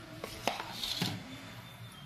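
Stainless steel pot and plate knocking lightly as cooked rice is scooped from the pot onto the plate: three light knocks in the first second, the one about half a second in the loudest, with a short soft hiss just after.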